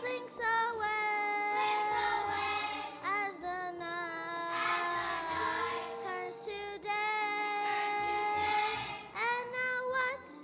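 A child singing into a stage microphone with music behind, long held notes, several of them sliding up into pitch.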